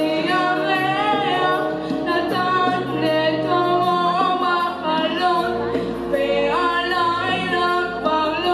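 A boy singing a Hebrew song into a microphone, the melody wavering with vibrato, over musical accompaniment of held chords and a bass line that moves to new notes about halfway through.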